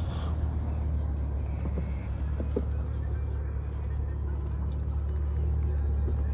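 Steady low drone heard inside the cabin of a BMW i8 moving slowly through city traffic.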